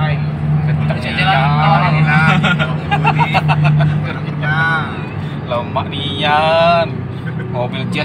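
Honda Jazz engine heard from inside the cabin while driving, a steady drone that drops in pitch about five seconds in. It runs smoothly under way after a carbon-cleaning tune, without the stutter (brebet) it used to have on gear changes. Voices sound over it.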